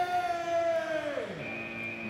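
A long, drawn-out call held on one slowly falling pitch, dropping off about a second and a half in: the start call before a chase. Near the end a high, steady electronic start tone begins as the chase clock starts.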